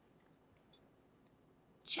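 A few faint clicks of a spoon against a glass mixing bowl as thin batter is scooped, over quiet room tone. A woman starts speaking right at the end.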